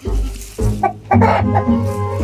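Rooster clucking in a few short calls about a second in, over background music.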